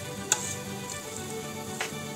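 A metal fork stirring dry grated cheese in a steel pot, with two sharp clicks of metal on metal, over quiet background music.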